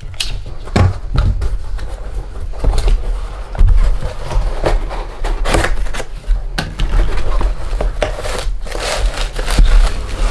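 Cardboard air-rifle box being cut and opened by hand: repeated scrapes, tearing and knocks of the box and knife against the tabletop, with a low handling rumble. Near the end a plastic-wrapped scope is pulled out of the box.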